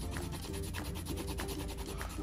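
Felt-tip marker scribbling on a paper towel, rapid back-and-forth rubbing strokes as a drawn shape is coloured in.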